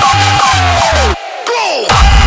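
Hardstyle track with a fast, distorted pitched kick-drum pattern under a held lead note; about a second in the kicks cut out for a short break filled with a crowd-shout sample and falling pitch sweeps, and the kicks come back at the end.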